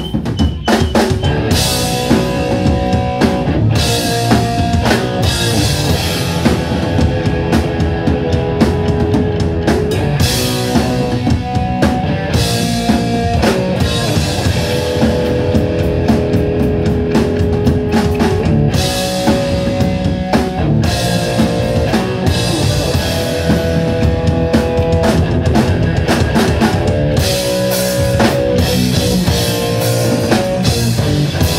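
Hardcore punk band playing live and loud: distorted electric guitar, bass guitar and drum kit going without a break.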